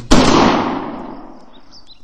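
A single gunshot sound effect: one sharp, loud crack just after the start, followed by an echoing tail that fades away over about a second and a half.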